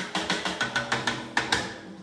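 Live small jazz combo playing, the drum kit's quick stick strokes standing out over sustained low pitched notes.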